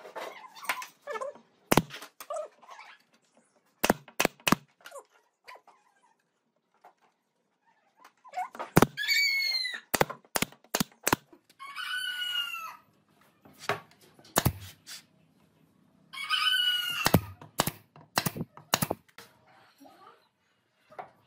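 Pneumatic brad nailer firing nails into hardwood frame strips: sharp shots scattered through, several in quick runs. A chicken calls three times in the background, each call about a second long.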